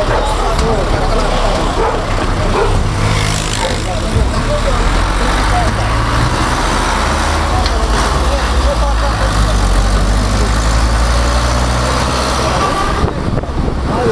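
Truck engine idling steadily, a low hum under the whole stretch, with people's voices calling out over it.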